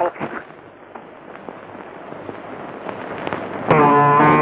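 An old film soundtrack: a shouted line ends, then a crackling hiss with scattered clicks slowly grows louder, and near the end a loud brass-led music cue begins.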